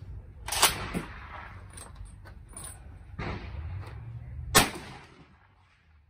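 A Stoeger P3000 12-gauge pump shotgun fires a one-ounce slug: one loud report about four and a half seconds in. Two shorter, sharp clacks come about half a second apart near the start.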